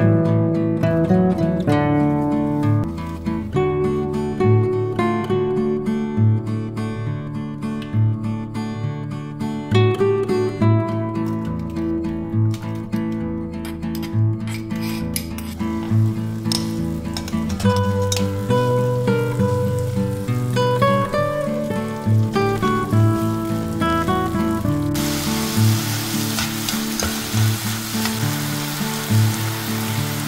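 Chopped onion and ground beef frying in oil in a non-stick pan: from about halfway, a spoon taps and scrapes as the onion is stirred, and over the last few seconds a steady, louder sizzle sets in. Gentle background music plays throughout.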